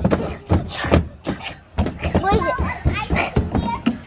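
Young children chattering and calling out as they play, in high-pitched voices.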